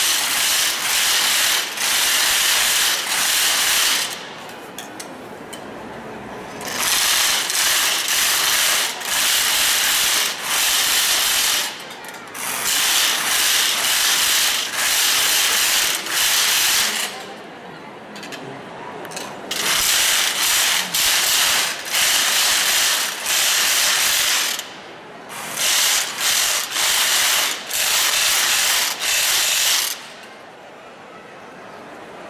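Many hand-held wooden matracas (ratchet rattles) played together by procession members: a dense, continuous clatter in runs of several seconds, broken by brief pauses about every four to five seconds.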